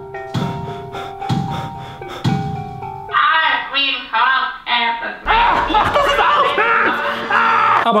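Countdown music: a short melody of struck notes over a low thump about once a second. About three seconds in it gives way to a woman's loud, high-pitched voice from a played-back clip, which sounds thin and cut off in the highs. This voice is the 'painful tone' that was announced.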